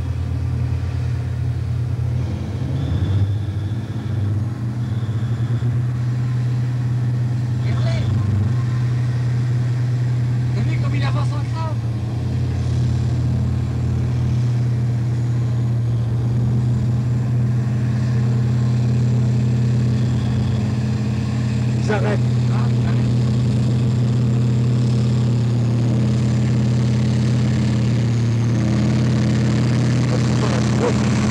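Vehicle engine running at an unchanging speed: a loud, even, low drone with no revving.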